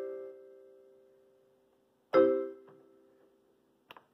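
Yamaha PSS-A50 mini keyboard playing its marimba voice with the sustain switched on: a chord rings out and fades, then a second chord is struck about two seconds in and dies away within about a second. A short click near the end.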